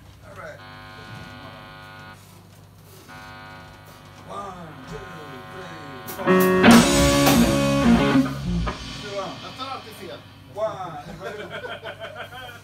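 Amplified electric guitar being tried out between songs: a few held notes, then a loud strummed chord about six seconds in that rings for about two seconds, with voices talking in between.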